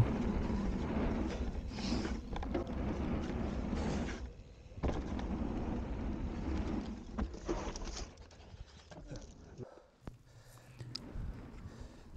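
Mountain bike ride heard through a handlebar-mounted camera's microphone: wind rumble and tyre and trail noise with scattered rattles. It goes quieter about eight seconds in.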